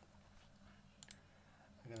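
Near silence broken about a second in by two quick clicks from a computer input device.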